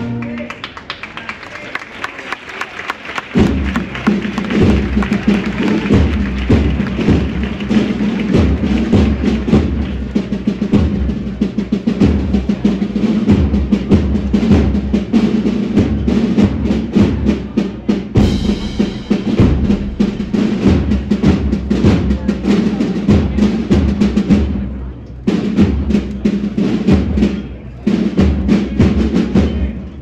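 Brass band playing a processional march: the drums play alone for the first few seconds, then the full band comes in with a steady drumbeat under sustained brass chords.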